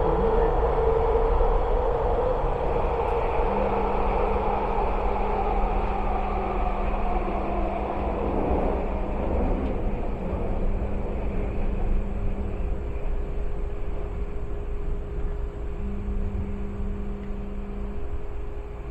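Vancouver SkyTrain Expo Line car running through a tunnel, heard from inside the car: a continuous rolling rumble of wheels on rail. A low steady hum comes in a few seconds in, drops out about two-thirds of the way through and returns near the end, with a higher hum joining it.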